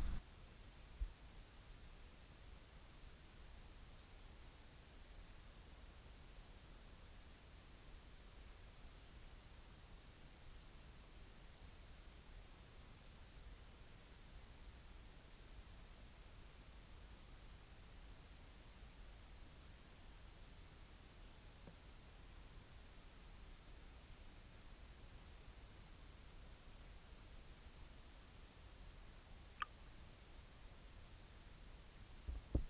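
Near silence: the faint steady low rumble of an underwater camera's ambience, with two small clicks, one about a second in and one near the end.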